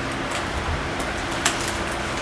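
Room tone through the meeting's microphone system: a steady low hum and hiss, with a single click about one and a half seconds in.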